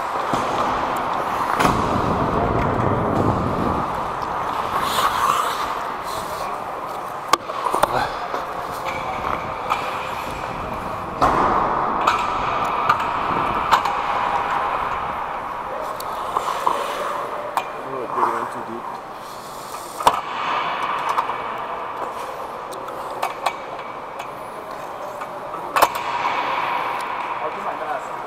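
Indoor ice rink sound during a stoppage in play: indistinct players' voices over a steady hall hum, with skate blades on the ice and scattered sharp knocks of sticks and pucks.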